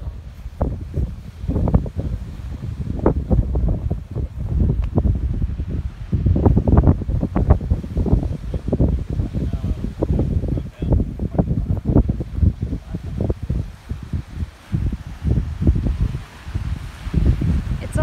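Strong wind buffeting the phone's microphone in uneven gusts, a loud low rumble that covers much of the sound of the waves on the rocks.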